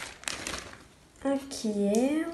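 Light rustling and crinkling of something being handled for about a second, then a voice speaking with a rising pitch for the rest.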